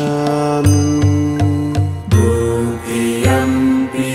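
Devotional music in a mantra-chant style: long held notes over a low pulsing beat, moving to new notes about two seconds in.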